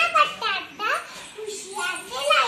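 A young girl speaking in a high-pitched voice, delivering her lines in short, lively phrases.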